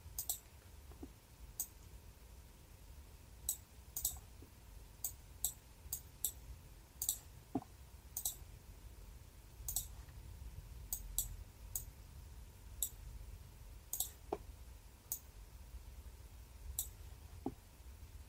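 Computer mouse clicking at irregular intervals, roughly once a second, faint, over a low steady hum.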